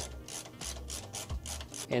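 Phillips screwdriver turning the screw that fixes a graphics card's metal bracket to the PC case, a faint run of small clicks and scrapes, about five or six a second, as metal turns on metal.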